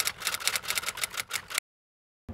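Typewriter key strikes, a quick irregular run of clacks, cutting off abruptly into silence about one and a half seconds in.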